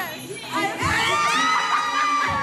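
A small group of people screaming and cheering in high, drawn-out voices that rise in pitch and overlap, swelling in about a second in.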